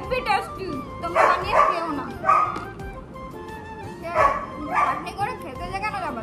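A dog barking in short bursts, one group of barks about a second in and another about four seconds in, over steady background music.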